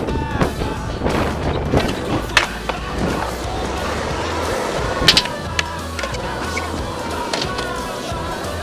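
Skateboard wheels rolling over concrete with a steady low rumble, and a few sharp knocks about two and five seconds in, mixed with music.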